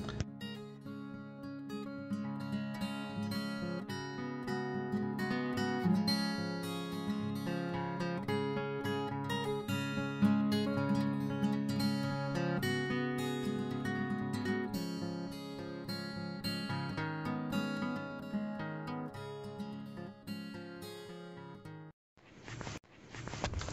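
Background music played on acoustic guitar, a steady run of plucked notes.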